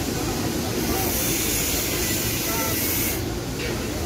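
A steel spice shaker shaken over food, sprinkling masala powder: a steady high hiss that stops abruptly about three seconds in, over steady background street noise.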